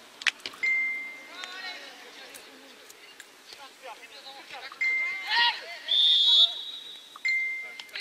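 Players' and coaches' shouts across a football pitch, with several short steady whistle tones: three at one pitch and a longer, higher one about six seconds in. A sharp thump comes just after the start.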